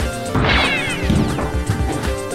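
Sci-fi ray-gun zap sound effect, a sweep falling in pitch about half a second in, followed by a fainter falling zap, over music with a steady beat.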